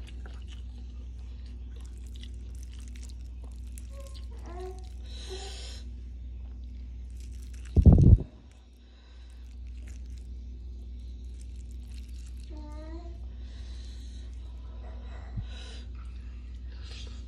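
Someone eating rice and fried egg by hand: soft chewing and mouth sounds with a couple of short murmured hums, over a steady low hum. One loud low thump comes about eight seconds in.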